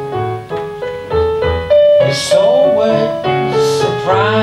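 Digital keyboard played in piano voice, a prelude in A major with chords and a melody. About halfway through, a man's voice starts singing over it.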